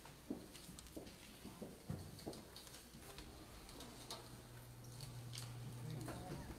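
Faint, scattered knocks and taps of people moving about in a church, irregular and unevenly spaced. A low steady hum comes in about four seconds in.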